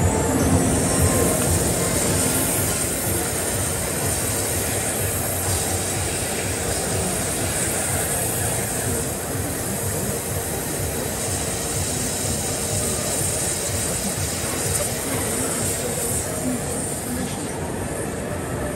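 Flow Mach 200 waterjet cutting a plate, a steady loud hiss of the high-pressure jet striking the work and the water in the catch tank.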